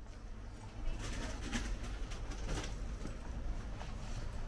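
Bird calls: a few short ones about one and a half and two and a half seconds in, over a steady low hum.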